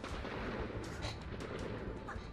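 A dense crackling rumble from the game's sound design, swelling suddenly at the start.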